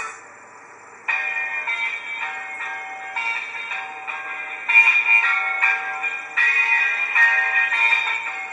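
Music playing from an iPhone's small speaker, thin with almost no bass. It cuts out at the start as the track is changed, a new track begins about a second in, and the volume then steps up twice, about five and six and a half seconds in.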